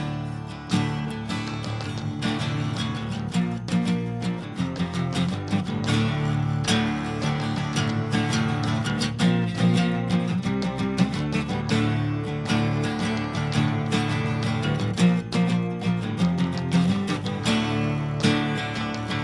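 Strummed acoustic guitars over an electric bass guitar, played live: the instrumental intro of an acoustic rock song, starting on a count-in.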